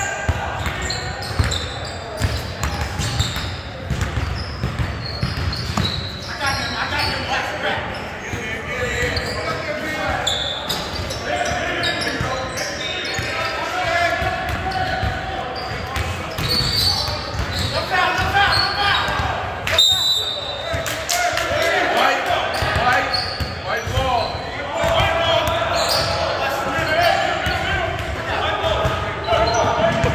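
A basketball bouncing on a hardwood gym court, with repeated sharp knocks and players' indistinct shouts and chatter echoing through a large hall.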